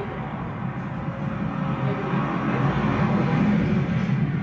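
Steady road and engine noise of a car driving, from a video shot along a highway past an oil field and played back through the lecture hall's speakers.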